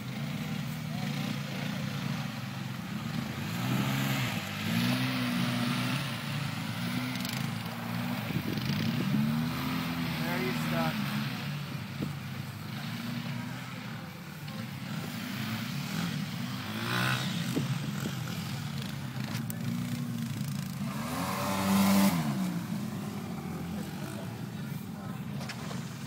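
ATV engines revving in deep mud, the pitch climbing and falling again in repeated pulls, loudest near the end. The red four-wheeler is stuck in the mud hole.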